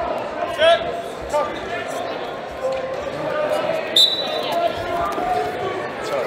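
Gym crowd chatter and voices calling out, echoing in a large hall. About four seconds in there is a short referee's whistle, signalling the restart of the wrestling.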